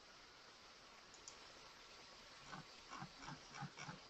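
Near silence: room tone, with a few faint, short sounds in the last second and a half.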